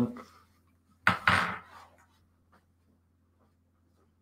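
A short clatter about a second in, followed by a few faint ticks, over a low steady hum.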